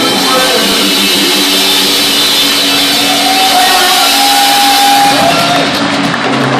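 Live blues-rock band playing loudly on electric guitars, bass and drums, with one long held note from about three to five seconds in.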